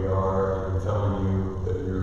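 A man's voice speaking, with drawn-out syllables, echoing in a large church sanctuary.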